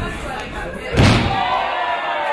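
A wrestler slammed down onto the ring mat: one heavy thud about a second in, with the ring's boards booming under the canvas. Crowd voices shout around it.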